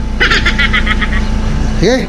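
A car engine idling steadily, a low hum under everything. About a second of quick, high-pitched chattering pulses comes early on, and a laugh near the end.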